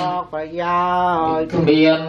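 Buddhist chanting in unison, long notes held on a steady pitch, with a short break for breath near the start and another about a second and a half in.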